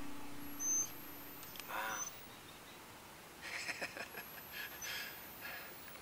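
Faint outdoor ambience with a few short, high bird chirps: one just under a second in, another near two seconds, and a cluster in the second half, the whole fading out toward the end.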